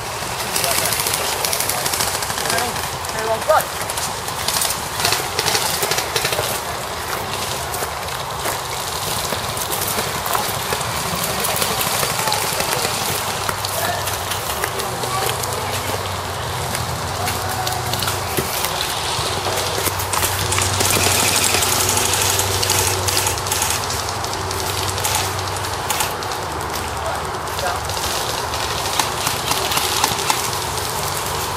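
Airsoft guns firing in bursts of rapid clicks, with indistinct voices shouting.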